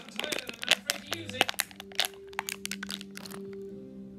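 Plastic water bottle crackling and crinkling as it is twisted and crushed by hand: a dense run of sharp cracks that thins out after about three seconds.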